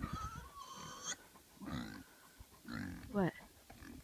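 An animal calling: a call about a second long at the start and a shorter one a little before halfway.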